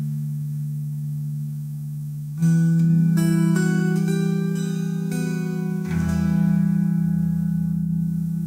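Instrumental close of an AI-generated (Suno) folk song, with no singing: acoustic guitar over a held low chord. A run of plucked notes starts about two and a half seconds in, and a new chord with a deeper bass comes in near six seconds and slowly fades.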